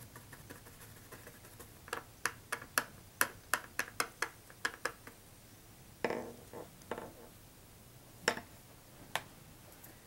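Light, sharp clicks and taps of small craft items being handled and set down on a work surface: a quick run of about three a second for a few seconds in the middle, then a few softer knocks and scattered single clicks.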